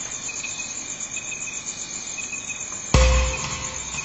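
Crickets chirping in a steady, fast, high-pitched trill through the dark. About three seconds in, a sudden loud low boom cuts in, with a brief held tone ringing after it.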